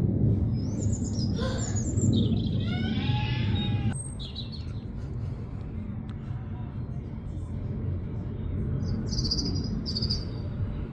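Small songbirds calling: a few high chirps, then a quick run of falling notes about two to four seconds in, and more short chirps near the end, over a steady low rumble.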